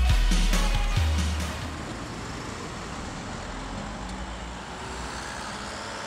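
Dance music with a heavy bass beat fades out over the first second or two, giving way to steady city street traffic noise.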